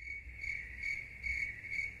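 Crickets chirping, a steady high trill that swells about twice a second: the stock sound effect for a joke met with silence.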